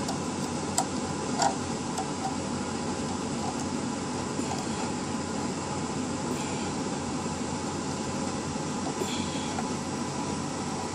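Steady background hum and hiss like a fan or air conditioner, with a couple of faint clicks about a second in as plastic model parts are handled.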